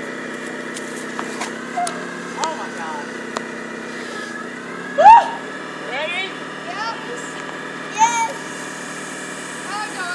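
A forklift engine idling steadily. Several short rising vocal cries cut in over it, the loudest about five seconds in and another near eight seconds.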